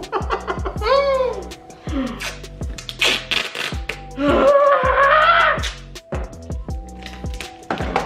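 Background music with a steady beat, with short voice-like sounds about a second in and again for a stretch past the middle.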